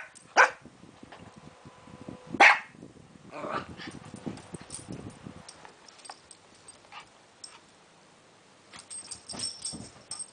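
Pug-mix puppy barking: two sharp barks, about half a second and two and a half seconds in, then softer scattered sounds of play. A faint jingling comes near the end.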